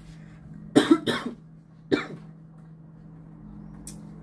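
A woman coughing: two quick coughs about a second in, then one more about a second later.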